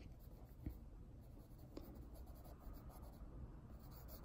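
Faint scratching of a pencil on sketchbook paper as a drawing is sketched out, with a light tap about two-thirds of a second in and another a little before two seconds.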